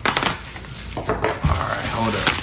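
A steak knife cutting bubble wrap inside a cardboard box, the plastic crinkling and crackling, with a soft knock about one and a half seconds in.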